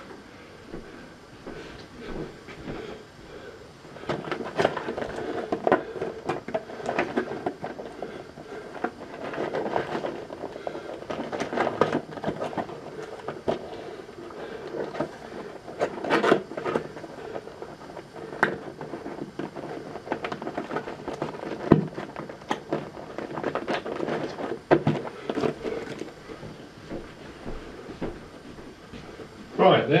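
Handling noise of AV equipment and cables being packed into a carry bag: irregular rustles, clicks and knocks, busier from about four seconds in.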